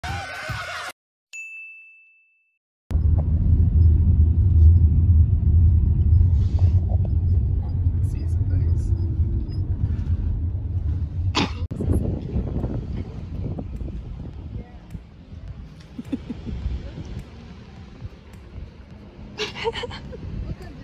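Steady low rumble of car road and engine noise heard inside the cabin, loudest early on and slowly fading. It follows a brief exclaiming voice and a single short ding at the very start.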